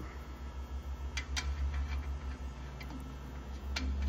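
A few light metallic clicks as a long steel hex nut is fitted and threaded onto the threaded shaft of a hydraulic cam bearing installer. Two come close together about a second in and one comes near the end, over a low steady hum.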